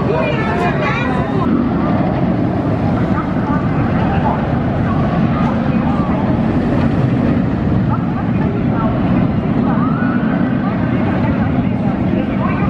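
Amusement-park background at night: a steady low rumble, with people's voices in the first second or so and again near the end.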